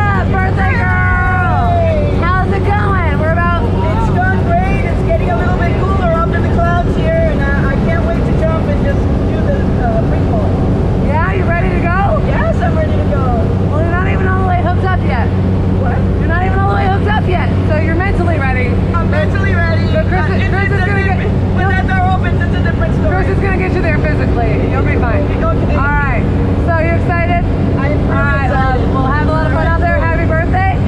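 Steady drone of a small propeller plane's engine heard inside its cabin, with voices talking over it.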